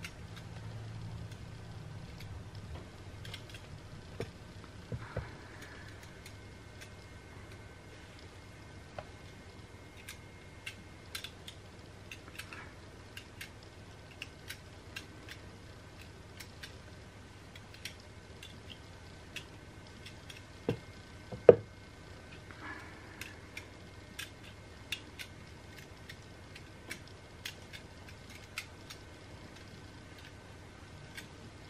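Edges of a bar of cold-process soap being shaved with a stainless steel peeler, giving a run of small, scattered clicks and scrapes as the blade cuts. Two louder knocks come a little after two-thirds of the way through.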